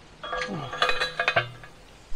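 Steel post driver clinking and ringing as it is fitted down over a plastic T-post: a quick run of several metallic clinks over about a second and a half.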